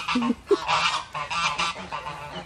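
A group of domestic geese honking, several loud calls in quick succession.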